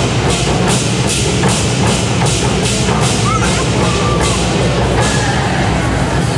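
Ensemble of Chinese barrel drums with tacked skins, struck with sticks in a steady beat of about two to three strokes a second.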